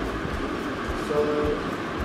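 A pause in a man's talk, filled by one drawn-out, held "so" about halfway in, over a steady background hum and hiss.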